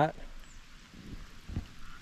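Quiet outdoor background hiss in a pause between spoken words, with one faint low thump about a second and a half in.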